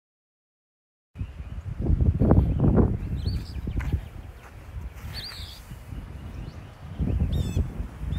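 Wind buffeting the microphone in gusts, starting about a second in, with a few birds chirping and trilling over it.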